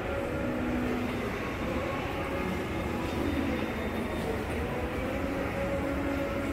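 Steady indoor ambience of a shopping mall corridor: an even background rumble and hiss, with faint, indistinct snatches of distant voices coming and going.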